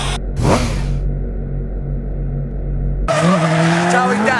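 Intro sound design: a steady low drone with a short hiss at the start and a whoosh about half a second in. About three seconds in it cuts to trackside sound of a drift car's engine revving hard, rising in pitch, over the noise of tyres sliding.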